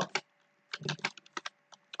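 Typing on a computer keyboard: a quick run of key clicks, then a few scattered taps.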